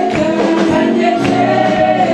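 Group of voices singing a gospel song together, held notes in chorus with musical accompaniment.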